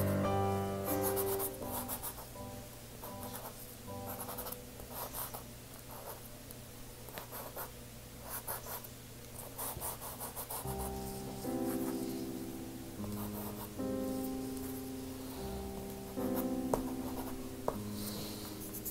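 Terry Ludwig soft pastel stick scratching in short, irregular strokes across UArt sanded pastel paper as a poppy is laid in, under soft background music with held notes.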